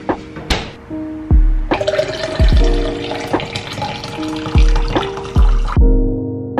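Liquid poured from a jug into a tall glass of cold coffee: a steady pour starting about two seconds in and lasting about four seconds, over background music with a regular beat.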